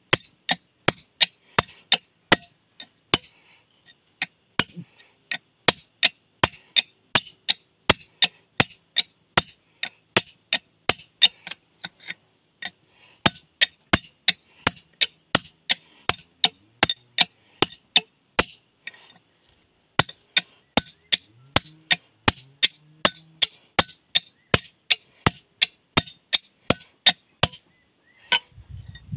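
Hand hammer striking a steel chisel held on a stone slab: a steady run of sharp metallic strikes, about three a second, with a brief pause about two-thirds of the way through.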